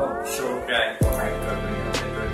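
Background music: a rising sweep of tones ends just before a second in, then a deep falling bass hit lands about a second in and a steady low bass carries on under the beat.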